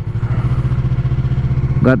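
Yamaha R3 parallel-twin motorcycle engine running steadily at an even pitch while the bike rolls along, heard from the rider's seat.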